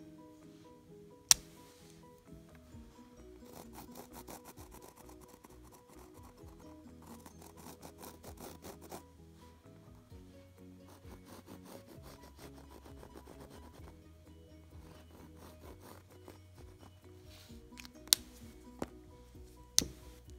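Background music, with a fine-liner pen scratching in short rapid strokes across the painted leather surface of a purse. There are a few sharp clicks, one a second in and three near the end.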